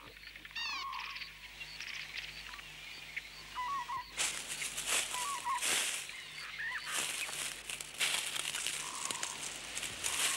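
Birds calling with short chirps. From about four seconds in, footsteps crunch irregularly through dry leaf litter.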